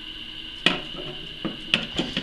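Sharp metal clicks as the loose parts of a digital caliper are handled and its slider is fitted back onto the beam: one crisp click about two-thirds of a second in, then a few quicker ones near the end.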